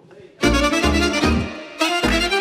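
Romanian folk band striking up the intro of a song about half a second in, the fiddle leading over a bass line that pulses on the beat.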